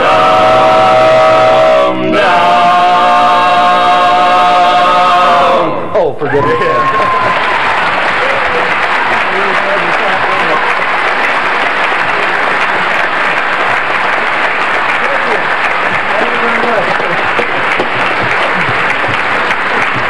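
Barbershop quartet holding the final chord of a song in unaccompanied four-part harmony, with a short break about two seconds in, cutting off about six seconds in. Then the audience applauds steadily.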